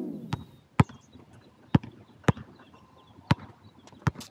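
Basketball pounded hard on an outdoor hard court in a step-back dribble: five sharp bounces at uneven spacing, the loudest about a second in.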